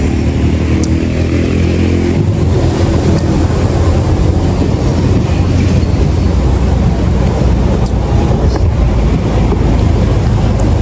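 A motor vehicle driving: a steady low rumble of engine and road noise, with a clear engine hum during the first two seconds.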